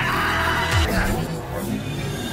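Music with a wavering, shaky cry-like sound effect over it that fades about a second in.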